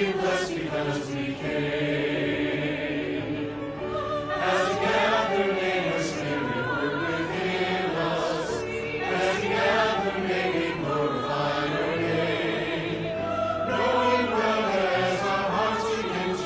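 A church chancel choir of men and women singing together, as a virtual choir mixed from voices recorded separately at home.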